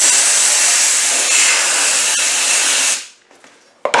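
Compressed-air blow gun with a needle nozzle blasting air in one steady hiss for about three seconds, then cutting off, blowing out a starter motor's needle roller bush. A short click comes near the end.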